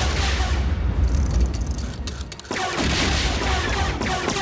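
Destroyer droids (droidekas) firing volleys of blaster shots over a heavy low rumble. There is a sharp burst just as the sound begins and another about two and a half seconds in.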